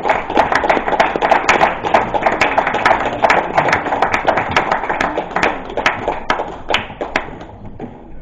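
Audience applauding: dense, irregular clapping that thins out and dies away over the last two seconds.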